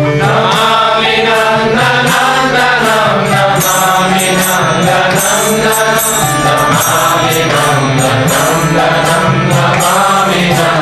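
Devotional kirtan: a mantra sung melodically over a steady low drone, with percussion keeping a regular beat.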